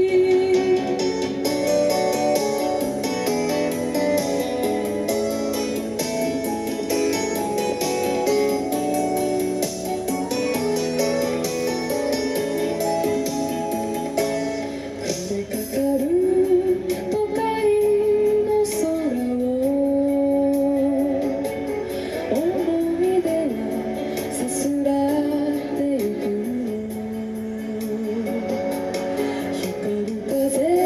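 A young female singer performing a Shōwa-era Japanese pop ballad (kayōkyoku) into a handheld microphone over a musical accompaniment with guitar. The first half is mostly the accompaniment, and her voice comes in strongly about halfway through with long, gliding held notes.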